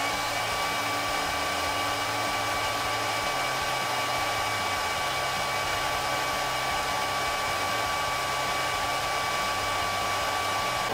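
Conair hair dryer running steadily, blowing hot air onto an action figure's plastic lower legs to soften them for a limb swap. It makes an even rushing noise with a thin high whine on top.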